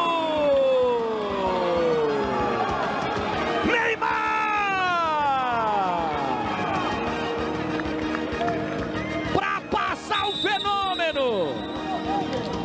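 A football TV commentator's drawn-out goal shout: one long held call sliding down in pitch, then a second long falling call about four seconds in, followed by shorter rising-and-falling calls near the end.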